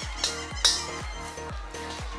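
Background music with a steady beat, and over it two sharp metallic scrapes early on, the second the louder, from a metal spatula scraping stir-fried noodles out of a wok.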